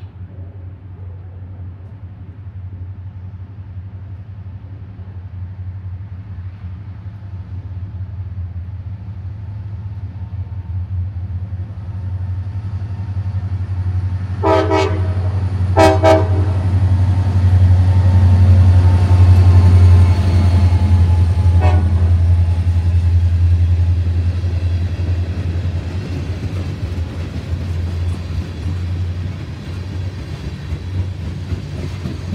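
Norfolk Southern freight train with diesel locomotives approaching and passing close by. The engine drone grows steadily louder and peaks as the locomotives go past, with two short horn blasts about halfway through and a fainter third shortly after. After that come the rumble and clatter of tank cars rolling by.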